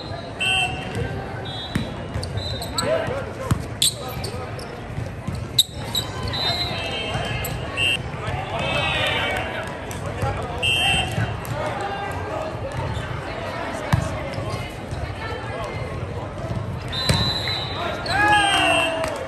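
Indoor volleyball match play: a few sharp smacks of hands on the ball, short high squeaks, and players shouting over background chatter in the gym.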